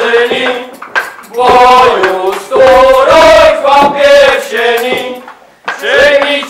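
A group of carollers singing together, men's voices to the fore, in sustained phrases with short breaths between them about a second in and again near the end.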